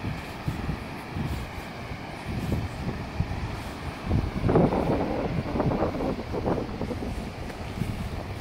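Wind buffeting the microphone in irregular gusts, stronger and choppier for a few seconds in the middle.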